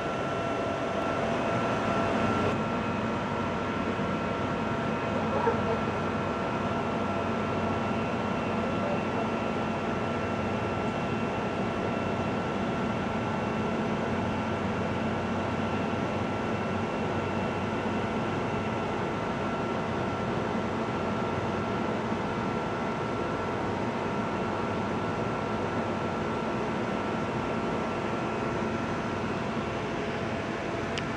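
A steady background hum: constant noise with a few thin high tones held unchanged throughout.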